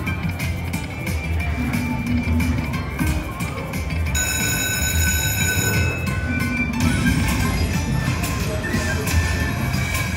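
Dragon Link Happy & Prosperous slot machine playing its free-game bonus music and sound effects. About four seconds in, a bright chime rings and is held for about two seconds before dropping away.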